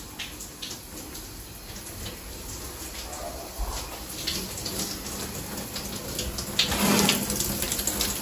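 Shower running: a steady spray of water that grows louder near the end as the shower curtain is pulled open.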